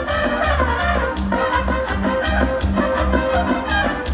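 Brass band music with a steady bass beat about twice a second, played for dancing.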